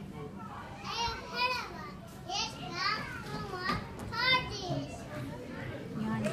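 Young children's voices, with about half a dozen short, high-pitched calls between about one and four and a half seconds in, over a low background murmur.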